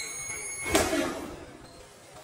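A single thud of a boxing-glove punch landing about three-quarters of a second in, during close-range sparring.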